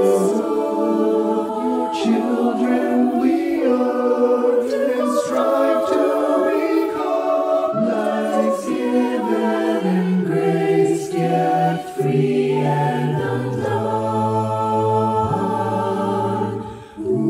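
Mixed a cappella choir of men's and women's voices singing in close harmony, holding chords, with no instruments. A low bass part joins about ten seconds in.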